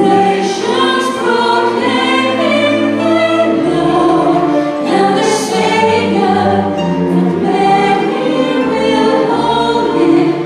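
A choir singing a carol, accompanied by a chamber string orchestra with piano and bass; deep bass notes come in about three and a half seconds in.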